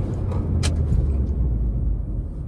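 Inside the cabin of a Maruti Suzuki Baleno Delta on the move: the petrol engine's low drone, lower in pitch than just before, under steady road noise as the car slows in a brake test. There are two light clicks in the first second.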